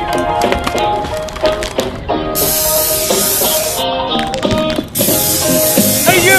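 Background music with a beat, over which an aerosol spray-paint can hisses twice, once about two seconds in and again near the end, each hiss lasting about a second and a half.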